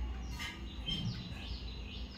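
Birds chirping in a quick run of short up-and-down calls, over a low steady hum.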